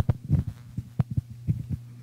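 Irregular low thumps and knocks picked up by a microphone, over a steady low electrical hum from the sound system.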